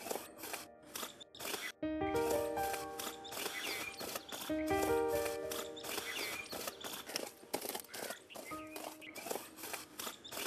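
Background film music: short phrases of held instrument notes over a quick, scratchy rhythm.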